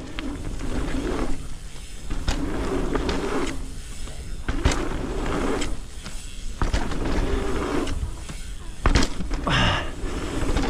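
Mountain bike on 27.5-inch wheels riding a line of dirt jumps: tyre rush on packed dirt and wind on the camera microphone swell and fade with each take-off, and the bike lands with a sharp knock about four times.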